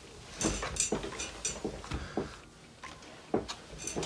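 Hands handling a laptop while cleaning it with a wipe and cloth: irregular light knocks, taps and rustling rubs.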